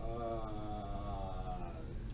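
A person's voice holding one long, low, steady hum for nearly two seconds, sagging slightly in pitch as it fades.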